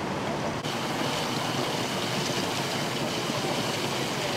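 Steady rushing of water gushing from a sheared high-pressure fire hydrant. Under a second in the hiss turns suddenly brighter, and a faint steady high tone joins it.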